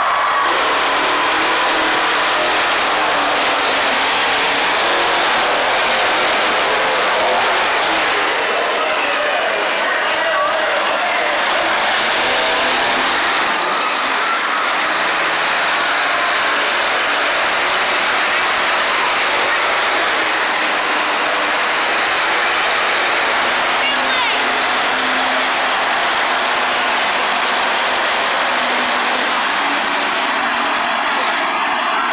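Monster truck engines running loud and steady across the arena, with crowd voices mixed in.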